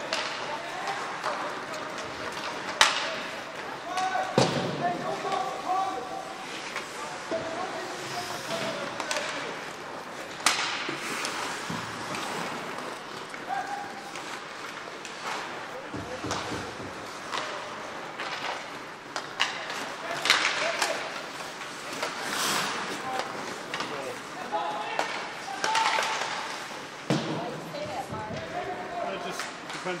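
Ice hockey play in an indoor rink: a scatter of sharp cracks and knocks from sticks, puck and bodies hitting the boards, the loudest about three seconds in and about ten seconds in. Distant voices call out over the rink's steady din.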